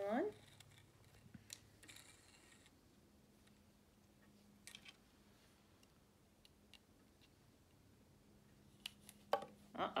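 Sparse, faint clicks and taps of wooden toy car blocks and plastic wheels being handled and pressed together, with a few sharper clicks near the end.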